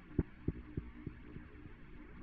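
Arturia B-3 V software organ playing its 'Organic Atmosphere' pad preset: a low hum with soft throbbing pulses about three a second, fading away after the first second.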